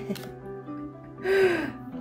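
A woman's short breathy laugh, about halfway through, over soft background music.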